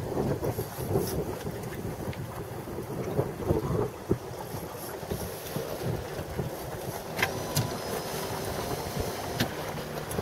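Steady low wind noise buffeting the microphone on an open boat, with a few short sharp clicks, one about four seconds in and a few more after seven seconds.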